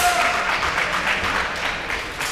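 Applause and crowd noise echoing in a large hall, thinning out over two seconds, with one sharp click right at the start.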